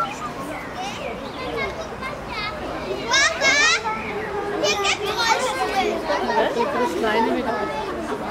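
Children's voices: several talking and calling at once, with a loud high squeal about three seconds in.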